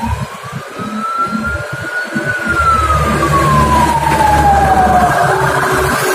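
A siren wailing: one slow rise and fall in pitch, beginning to rise again near the end, over a low engine rumble that comes in about two and a half seconds in.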